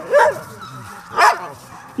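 Laika hunting dogs barking: short, sharp barks at the start and again about a second in.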